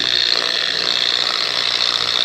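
Random orbital polisher running steadily on its lowest speed, a steady high-pitched whine, as its foam pad spreads polish over car paint.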